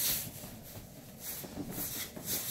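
Soft, irregular shuffling and rustling of an Airedale in dog booties and a person walking across carpet, with cloth and leash rubbing.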